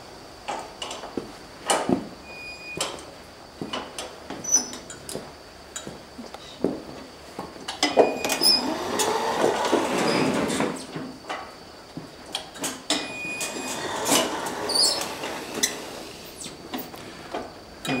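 Small electric go-kart driven by two 12-volt 150-watt permanent-magnet DC motors, whirring as it moves off with a whine that rises and falls about halfway through, among scattered clicks and knocks from the kart and its switches.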